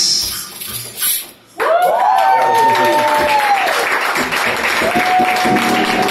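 The song's final music fades out, and after a short gap a live audience bursts into loud applause with whooping cheers.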